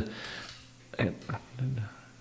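A man's hesitant speech: a drawn-out 'uh' between words, with a brief click about a second in.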